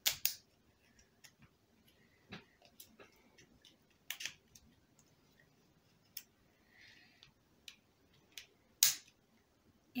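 Plastic construction-toy pieces clicking and knocking as they are handled and pushed together: scattered sharp clicks, the loudest about nine seconds in.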